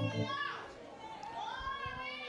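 Soft voices of worshippers praying and murmuring in a hall, with one higher voice gliding up in pitch about halfway through.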